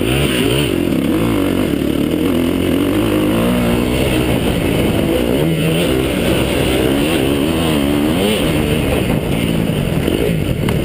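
A KTM 250 SX-F motocross bike's single-cylinder four-stroke engine is heard close up from the rider's chest. It revs up and falls back over and over as the bike is ridden hard around the track.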